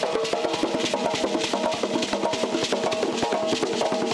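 Fast, driving hand-drum music: many quick drum strokes in a steady rhythm, with a repeating pitched melodic line over them.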